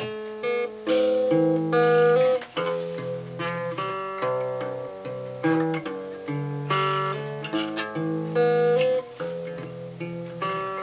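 Solo acoustic guitar playing a slow instrumental intro: chords struck about twice a second and left ringing, over a bass line that steps between notes.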